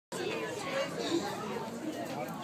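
People's voices chattering in the background, with no clear words.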